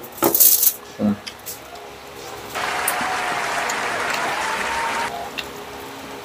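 Crispy pork belly crackling crunched in a bite about half a second in. From about two and a half seconds in, a steady noise runs for about two and a half seconds and starts and stops abruptly.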